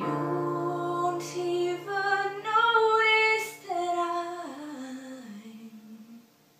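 A young woman singing a slow ballad over a digital piano. A chord is struck at the start and held while she sings a phrase whose pitch steps downward over the last couple of seconds, then fades out.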